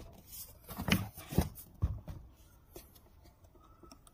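Handling noise from a plastic fish-camera monitor and its hard carrying case: rubbing and rustling, with three sharp knocks between about one and two seconds in, then quieter handling.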